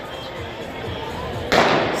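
Starting gun fired once for the start of a race, a single sharp bang about one and a half seconds in that echoes briefly around the indoor arena, over a low crowd murmur.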